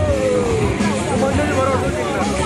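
Motorcycles racing on a dirt track, their engines running under voices.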